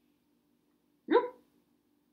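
Near silence, then one short yelp-like vocal sound about a second in, rising in pitch.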